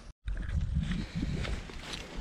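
Wind buffeting an action camera's microphone: a low, uneven rumble, with the soft steps of someone walking along a grassy path. A brief dropout at the very start marks an edit.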